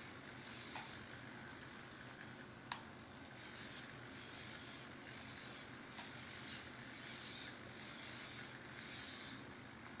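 Servo-driven hexapod robot walking on carpet: faint soft scuffs and servo hiss recur about once a second as its legs step, with one sharp click about a third of the way in.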